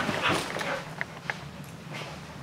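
A dog giving a short whimpering vocal sound in the first second, followed by a few soft clicks.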